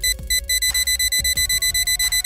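Cartoon time-bomb timer beeping rapidly, about seven high beeps a second, over a held tone that slowly rises in pitch.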